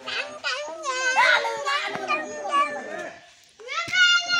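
Several children's voices talking and calling out over one another, with a short lull near the end.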